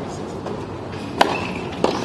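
Two sharp knocks of a tennis ball in play, about two-thirds of a second apart, the first the louder: a racquet strike and the ball hitting the court.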